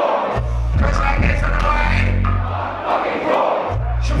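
Live hip-hop beat played loud through a club PA with heavy bass, the crowd shouting along over it. The bass drops out briefly at the start and again for about a second near the end.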